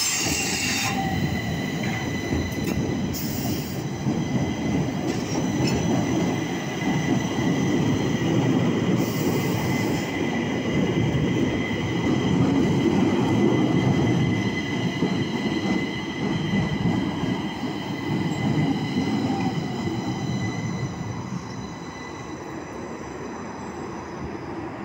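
Stockholm metro C20 trains running through the station, a continuous rumble of wheels on rail with a steady high-pitched squeal over it, growing quieter over the last few seconds.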